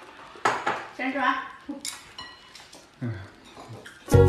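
Porcelain bowls and plates clinking and knocking against each other on a table as they are handled, with a short ringing after one knock a little before two seconds in.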